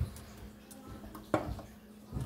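A low knock at the start and a single sharp tap a little over a second in, over quiet room noise with a faint steady hum.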